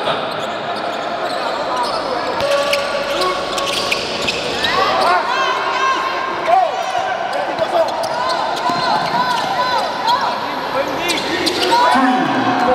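Live basketball on an indoor hardwood court: a ball being dribbled, with sharp bounces, and sneakers squeaking in short bursts, over a background murmur of voices in the hall.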